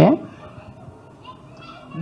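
A man's short questioning 'Yeah?' through a microphone at the very start, rising in pitch, followed by a pause filled only with faint murmuring voices from the audience.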